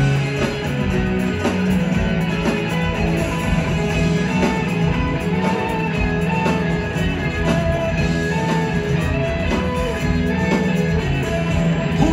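Live rock band playing an instrumental passage with no singing: electric guitars and a strummed acoustic guitar over bass and drums, loud and continuous.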